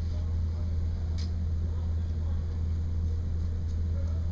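Steady low hum, with one short, sharp snip about a second in as scissors trim athletic tape on a taped foot, and a couple of faint ticks near the end.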